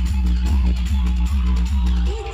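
Loud dance music with a heavy, booming bass line played through a large outdoor DJ sound system.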